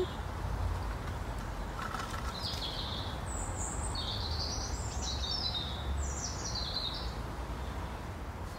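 Birds chirping, a run of short high notes through the middle, over a steady low rumble.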